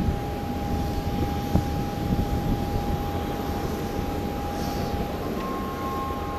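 Jet airliner climbing away after takeoff, its engines a steady low rumble, with a thin steady tone above it. A few low thumps come in the first couple of seconds.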